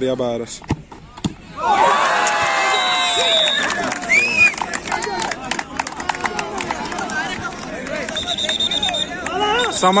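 Crowd of spectators breaking into loud shouting and cheering about two seconds in, many voices at once with a whistle among them, slowly dying down: the reaction to a missed penalty kick. Just before it, a short sharp knock as the ball is kicked.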